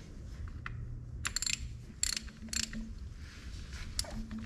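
Ratchet wrench clicking in a few short bursts, the first about a second in, as the O-ring-sealed fill plugs on an excavator final drive are snugged down, not tightened hard.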